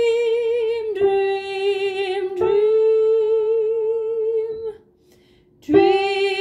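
A solo soprano voice singing long held notes with vibrato: a higher note, then a lower one, then a higher one again. It stops for a short breath about five seconds in, and the next note begins just before the end.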